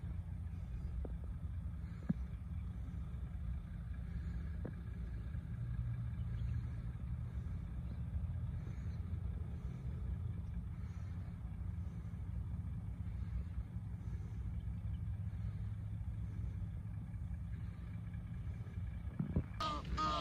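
A steady low rumble with a few faint clicks. Near the end, Egyptian geese break in with loud, repeated honking calls.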